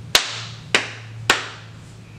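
Three sharp hand claps about half a second apart, each followed by a short room echo.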